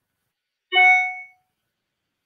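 A single short chime, one ringing note that starts sharply about two-thirds of a second in and fades out within about half a second.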